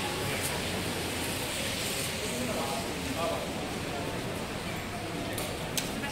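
Busy pedestrian shopping-street ambience: a steady wash of background noise with indistinct voices of passers-by, and a couple of sharp clicks near the end.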